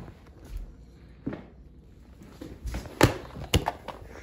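A mini basketball hitting an over-the-door hoop's backboard and rim on a missed shot. It makes a few sharp knocks: a faint one about a second in, the loudest about three seconds in, and another just after it.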